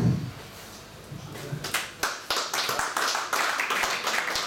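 A small group of people clapping in applause, starting after about a second and a half of quiet and running on as a dense patter of individual claps.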